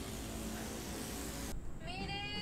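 A noisy hiss cuts off suddenly about one and a half seconds in. Then a high, meow-like cry starts, rising in pitch.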